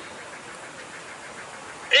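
Low, steady outdoor background noise, an even hiss with no distinct events, between phrases of a man's speech.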